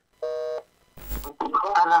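A short electronic telephone beep, steady in pitch and under half a second long, followed about half a second later by a brief crackle of phone-line noise.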